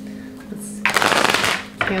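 A deck of tarot cards being riffle-shuffled: a rapid run of card flicks lasting under a second, starting a little before halfway through.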